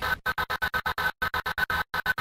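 Early-90s techno house music played from a Soundtracker module: a sampled sound is retriggered in a fast stutter of short, chopped hits, about nine or ten a second, broken by a couple of brief gaps.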